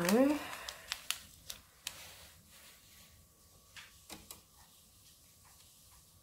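The tail of a spoken word, then light handling sounds: a tea sachet and a sheet of vellum being moved and set down, giving a few soft taps and paper rustles, most of them in the first two seconds and a few more around four seconds in.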